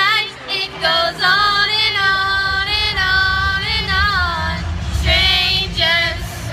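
A woman singing a slow melody with long, wavering held notes over instrumental backing music.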